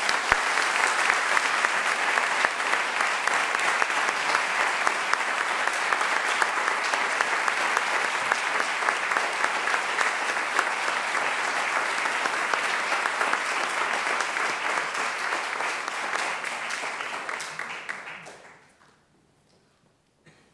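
Round of applause from a group of people, many hands clapping. It starts suddenly, holds steady for most of its length and dies away a little before the end.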